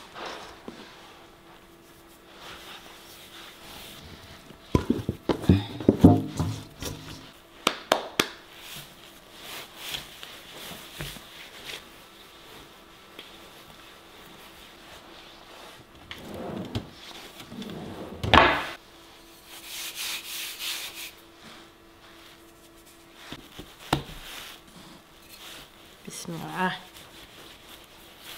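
Risen pizza dough being kneaded by hand on a countertop: soft rubbing and pressing with scattered thumps and knocks against the counter, several of them loud.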